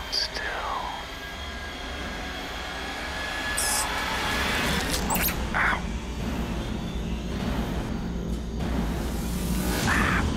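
Suspense TV soundtrack: a steady low droning score with a swelling whoosh in the middle and a few short, sharp hits, building again near the end.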